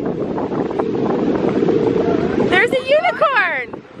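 Wind buffeting the microphone, then about two and a half seconds in a high-pitched voice calls out for about a second, its pitch sweeping up and down.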